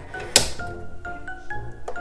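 Background music, with one sharp click about a third of a second in: the plastic blade clamp of a Cricut Maker snapping shut on a freshly fitted rotary blade.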